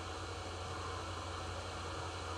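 Steady background hiss with a low steady hum, the recording's noise floor in a pause in the speech.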